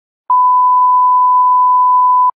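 A steady, pure test-tone beep, the reference tone that goes with television colour bars, starting about a third of a second in and holding one unchanging pitch.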